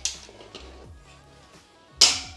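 Background music over faint handling of a steel folding bed frame, ending in a sharp metallic click as the folding leg snaps into its locked position.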